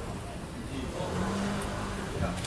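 Street traffic: a motor vehicle running nearby, with a steady low engine hum that comes in about halfway through.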